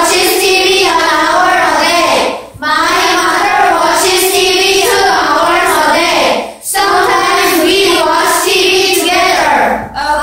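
A group of children reading a textbook passage aloud in unison, in a sing-song chant, phrase by phrase. There are short breaks about two and a half seconds and nearly seven seconds in.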